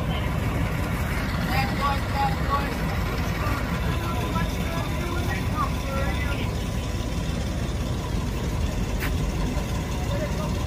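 A steady low rumble of an idling vehicle engine, with faint voices talking indistinctly.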